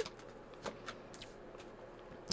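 Tarot cards being handled by hand as they are fanned out and one is drawn: a few faint, soft flicks and slides of card stock.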